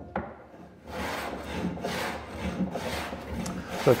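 Block plane shaving a timber carlin on a boat's deck framing, a run of quick, repeated strokes starting about a second in. The carlin is being trimmed down to a marked line so that the deck curve runs fair.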